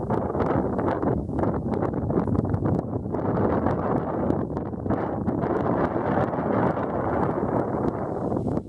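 Wind gusting across the camera's microphone: a loud, rough rumble that sets in suddenly and keeps buffeting.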